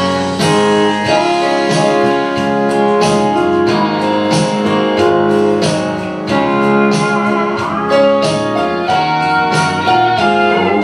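Instrumental break in a country gospel song's accompaniment: guitar-led backing music over a steady beat, with no singing.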